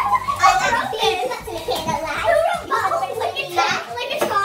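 A group of children's voices overlapping: excited chatter, squeals and giggling from several kids at once.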